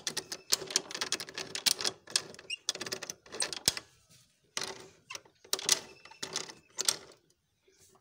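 Hero Honda motorcycle's kick-start lever worked by hand on a kicker that fails to start the bike: rapid, irregular metallic clicking and rattling, with a short pause about four seconds in, dying away about a second before the end.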